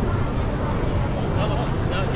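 Busy city street ambience: a steady low rumble of traffic under the chatter of passers-by, with a voice heard briefly in the second half.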